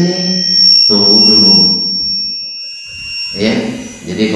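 A man's voice speaking over a microphone in short phrases, with a pause in the middle, over a steady high-pitched whine.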